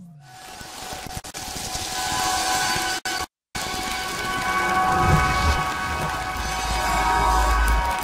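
Produced intro sound design: a swelling hiss with several held electronic tones over it. It drops out briefly about three and a half seconds in, then a deep rumble builds under it in the second half.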